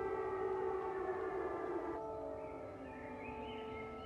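Air-raid siren sounding, a steady multi-tone note whose pitch starts to fall about halfway through.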